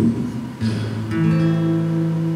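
Acoustic guitar played between sung lines: a chord struck about half a second in, then notes left ringing.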